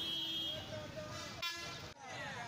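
Street ambience with a brief vehicle horn toot about a second and a half in.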